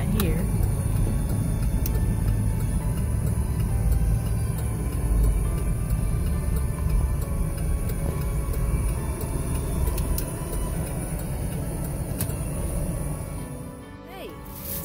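Car cabin noise while driving: a steady low rumble of road and wind noise that eases off from about ten seconds in as the car slows to pull in.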